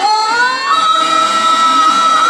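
A woman's voice singing one long, high held note in the style of Telugu stage-drama verse (padyam): the pitch slides up within the first second, then is sustained.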